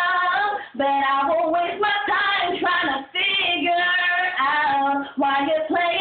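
A young woman singing solo and unaccompanied, holding long notes in phrases, with brief breath pauses about a second, three seconds and five seconds in.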